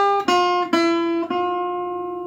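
Acoustic guitar picking four single notes in a quick run, G, F, E and back to F, playing around the note F. The last F is left ringing and slowly fades.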